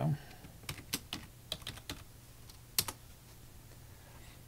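Typing on a computer keyboard: a short run of irregular key clicks as a brief chat message is typed and entered.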